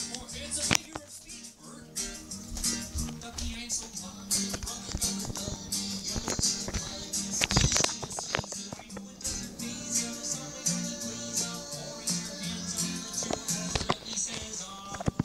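A song with a steady bass line and percussion, played from a television's speaker and picked up by a phone's microphone.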